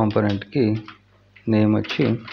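Computer keyboard typing under a speaking voice, the talk pausing briefly in the middle.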